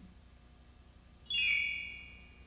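A bright chime struck about a second in: a few high, bell-like tones ringing and slowly fading. The tail of a warbling, wobbling sound effect dies away just before it.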